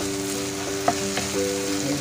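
Chopped tomatoes, onion and spices sizzling in hot oil in a pan as they are stirred and cooked down into a curry gravy, with a couple of sharp clicks of the spoon against the pan about a second in. Soft background music with held notes plays underneath.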